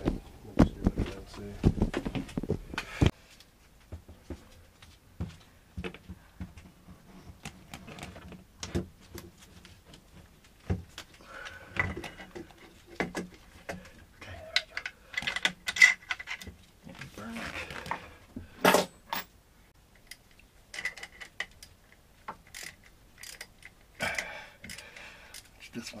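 Irregular metal clicks and clinks of hand tools on an alternator mount on a marine diesel engine, as the replacement alternator is fitted. Heavier knocks come in the first three seconds, and one sharp click falls about three quarters of the way through.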